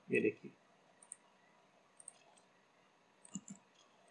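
A few faint clicks of a computer mouse, some in quick pairs, as the view is rotated and a panel is opened in the CAD program.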